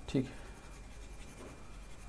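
Faint scratching of a pen stylus moving across a tablet screen as handwritten working on a digital whiteboard is erased.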